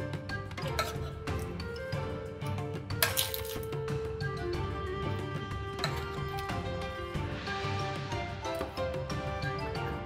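Background music, with several sharp clinks of metal tongs against a cast iron Dutch oven and a baking dish as pieces of chicken are lifted across; a cluster of clinks about three seconds in is the loudest.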